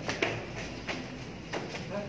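Footsteps climbing concrete stairs: a few separate steps, each a sharp knock, about two-thirds of a second apart.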